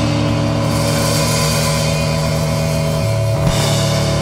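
Loud instrumental band music with electric guitar and drums: held low notes under a dense wash across the upper range, the held notes shifting about three and a half seconds in.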